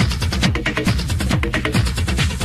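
Pounding techno from a DJ mix: a steady four-on-the-floor kick drum, a little more than two beats a second, under busy hi-hats and percussion.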